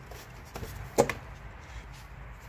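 Plastic engine cover of a 2003 Toyota Camry 2.4 being lifted off the engine: a few light clacks and knocks, the loudest about a second in.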